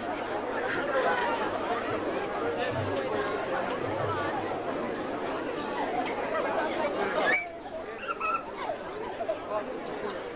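Audience chatter: many voices talking over one another, dropping off sharply about seven seconds in.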